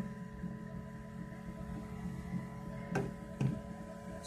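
Faint steady hum of fixed tones, with two light clicks about three seconds in.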